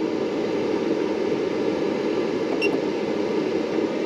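Steady whirring noise like a running fan, with one faint click about two and a half seconds in.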